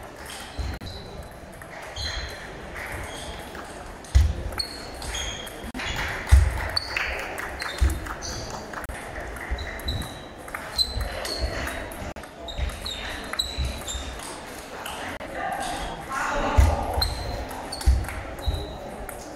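Table tennis balls clicking off rackets and the table in quick, irregular rallies, with short high pings, heard in a large echoing sports hall over a background of chatter. Several dull low thuds stand out among the clicks.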